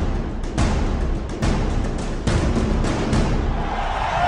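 Intro theme music driven by heavy, booming drum hits, several per second.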